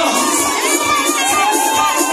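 Crowd of wedding guests cheering and shouting, many high voices overlapping, over dance music with a steady beat.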